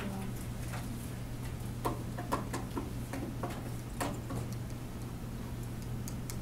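Stylus tapping and scratching on a pen tablet screen while writing by hand, a series of irregular light ticks over a steady low hum.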